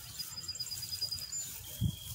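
Bird calls: a fast trill of short high chirps at one pitch for about a second, then a thin steady high whistle near the end. A single low thump comes just before the end.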